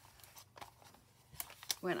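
Brown packing-paper journal pages being turned by hand: soft paper rustling with faint light taps, then two sharp clicks near the end.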